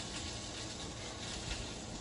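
Bacon and sausage links frying in a pan: a steady, even sizzle.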